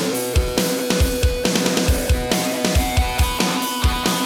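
Instrumental opening of an alternative rock song: a drum kit with a kick drum beating steadily about three times a second under sustained distorted guitar chords.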